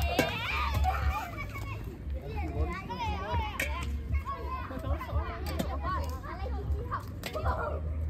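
Children's and adults' voices chattering and calling over a low steady rumble, with a few sharp clicks or knocks.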